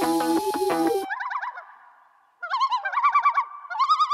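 Background music cuts off about a second in. After a short silence come bursts of bird-like warbling calls, a quickly wavering, whistled trill repeated in short runs with brief pauses.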